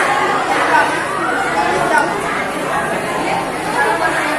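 Indistinct chatter of several people talking at once, with overlapping voices throughout.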